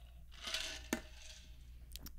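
A man drinking from a stainless steel tumbler close to a podcast microphone. There is a soft breath, then two small sharp clicks, about a second in and near the end, from the metal cup being handled.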